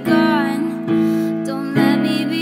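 Slow music led by keyboard chords, a new chord struck roughly every second, three in all.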